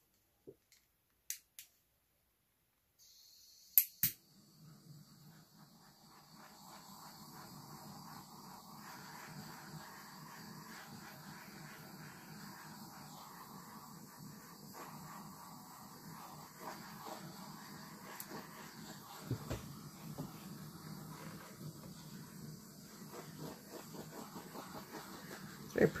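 Faint room noise with a low steady hum. It comes in after about three seconds of silence broken by a few light clicks, with two sharp clicks about four seconds in and a few light ticks later on.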